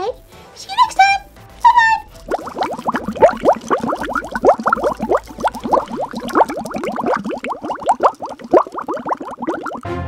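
A couple of short squeaky voice calls, then several seconds of rapid jabbering voice sounds with quick swoops in pitch, over background music.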